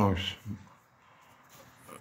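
A man's voice trailing off with a falling pitch in the first half-second, then near silence: room tone.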